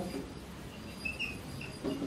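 Marker pen squeaking on a whiteboard while writing, a few short high squeaks a little past a second in, over a faint low room hum.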